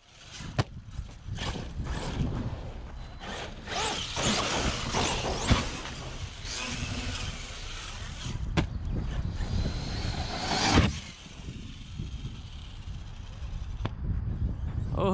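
An Arrma Kraton EXB 1/8-scale RC monster truck being driven hard over jumps: its electric drive whines up and down with the throttle, tyres scrabble on dirt, and several sharp knocks from landings, the loudest about eleven seconds in.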